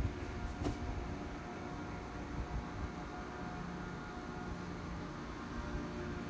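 Steady background hum of room noise with a faint steady tone, and one light click about half a second in.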